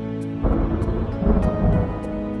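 A deep rumble of thunder starts about half a second in and dies away near the end, over soft background music.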